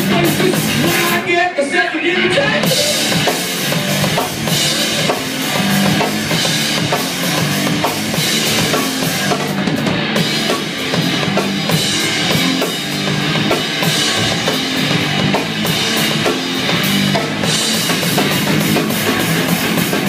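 Live rock band playing an instrumental passage: electric guitars over a driving drum kit with bass drum and snare, loud and dense. The high end thins out briefly about a second or two in.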